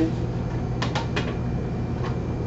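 Steady hum of kitchen ventilation, with a quick run of three or four light metallic knocks about a second in as a metal pizza pan is set down on a steel counter.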